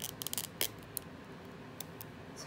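Fingernails clicking and scraping on a gold metal bronzer compact as it is worked open: a quick cluster of sharp clicks at first, then a few single clicks.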